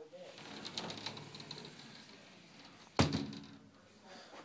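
Soft rustling and light clicking of clothes on hangers in a closet, then one sharp knock about three seconds in.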